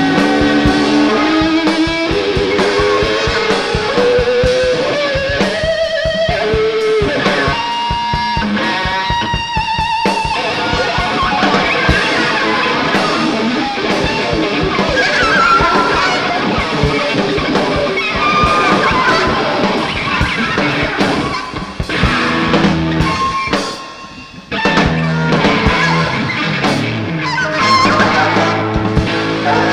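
Psychedelic rock recording: electric guitar over a busy drum kit, with a lead line sliding slowly upward in pitch over the first ten seconds. Near the end the music thins out for a moment, then the full band comes back in.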